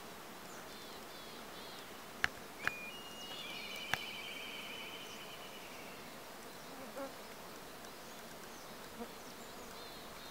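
Honeybees buzzing around the hives of a field apiary, a faint steady hum, with a few sharp clicks and a trilling chirp lasting about three seconds in the middle.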